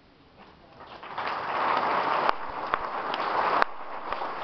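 Audience applauding, building up about a second in and then carrying on as a steady clatter of many hands, with a couple of sharp, loud claps close by.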